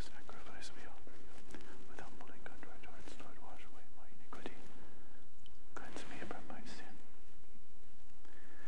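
A priest's quiet prayers at the altar, spoken mostly in a whisper, with a few light clicks from objects being handled.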